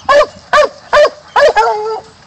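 Young black-and-tan coonhound barking at a caged raccoon: four loud barks about half a second apart, the last one drawn out longer.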